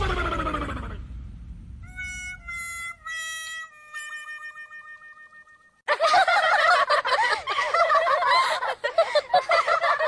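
Comedy sound effects from a film soundtrack: a loud falling swoop, then a few held notes that step down in pitch, the last one wavering. About six seconds in, a dense warbling clamour starts and runs on.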